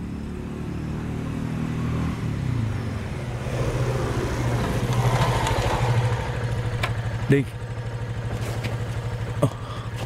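Motorcycle engine running as the bike approaches, getting louder about halfway through, then ticking over with a steady low pulse. There is a brief sharper sound about seven seconds in.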